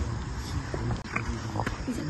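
Kabaddi players' voices: a low, repeated chant-like call from the raiding side, with a few sharp scuffs of bare feet on the dirt court.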